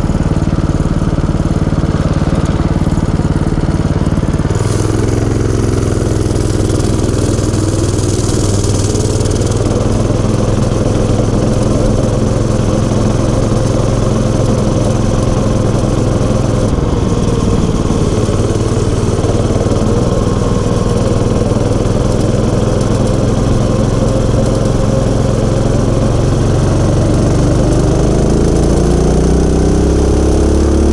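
Small engine of a motorized bike idling for about four seconds, then revving up as the bike pulls away and running steadily under way. Near the end the engine speed climbs again as it accelerates.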